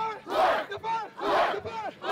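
A man shouting at close range amid a crowd: two loud yells about a second apart.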